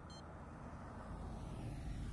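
A vehicle passing on a nearby road, its road noise swelling to a peak near the end and then easing off. A brief high chirp sounds just after the start.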